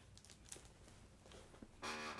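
Near silence: room tone with a few faint clicks of records being handled, and a brief hum of voice near the end.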